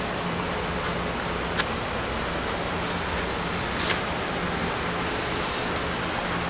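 Dog-rehabilitation treadmill running steadily under a walking dog, a constant mechanical hum with belt noise. Two short ticks come through, about a second and a half and about four seconds in.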